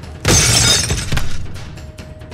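A sudden loud crash lasting under a second, about a quarter second in, over background music.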